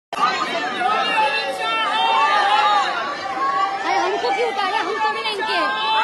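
Several people shouting and talking over one another at once, with a woman's raised voice close by; no single line of speech stands out clearly.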